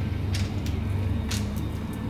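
About four sharp clicks and knocks from a folding e-bike's handlebar stem as its clamp is released and the stem is folded down, over steady low background music.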